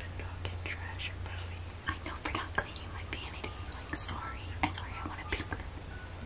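Hushed whispering between two people, short breathy hisses with no voiced tone, over a steady low hum.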